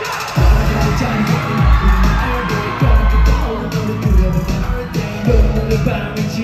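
K-pop dance track played loud over a concert sound system, recorded from the audience: a heavy bass beat hitting about once a second under sung vocals, with fans cheering and screaming.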